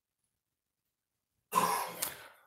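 A woman gives one short cough, clearing her throat, starting suddenly about one and a half seconds in.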